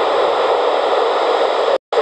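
Steady FM receiver hiss from a 70 cm transceiver on 439.000 MHz FM, its squelch open with no signal on the channel. It cuts out for a moment near the end.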